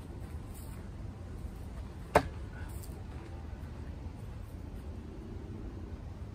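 A thrown Ka-Bar Short Tanto knife strikes a wooden target board once, with a single sharp thunk about two seconds in.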